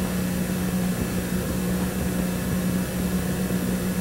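A steady low hum with an even background hiss, unchanging throughout, in a pause between speech.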